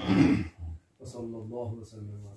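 A man clears his throat loudly in a brief harsh burst, then a man's voice carries on chanting a prayer of supplication in a level, sustained tone.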